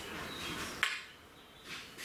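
Short breathy puffs drawn on a tobacco pipe as it is relit, with one sharp click about a second in. The flake tobacco keeps going out and needs match after match.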